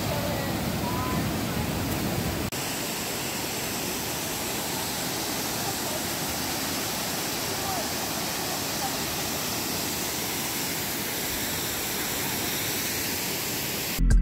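Rushing whitewater of a mountain river and a cascading waterfall: a steady, even rush of water, with a brief dip about two and a half seconds in where the sound changes.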